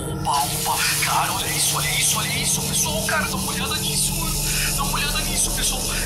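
Tap water gushing full blast from a wall faucet, a steady hiss that starts just after the beginning.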